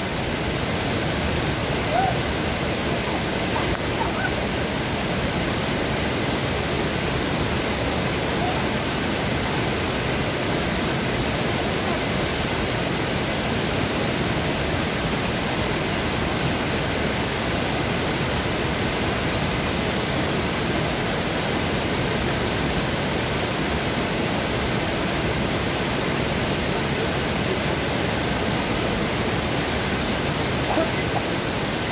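Small waterfall pouring through a stone weir into a pool: a steady, unbroken rush of falling water.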